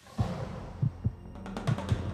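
Musical logo sting: a sudden swell opens it, followed by about five deep bass thumps, roughly in pairs, with a cluster of high glittering ticks just before the end.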